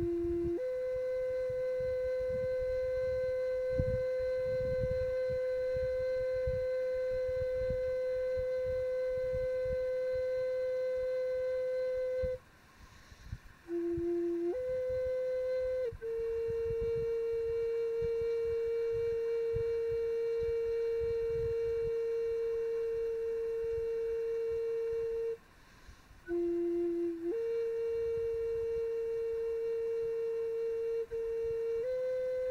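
Native American flute played in three long held notes, each begun with a short lower note and a quick grace note before rising to the sustained tone. The notes pause briefly about 12 s and 25 s in. A low gusting wind rumble runs underneath.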